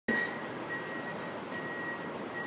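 Outdoor city ambience heard from high above a street: a steady hiss of distant traffic noise, with a faint high tone that comes and goes.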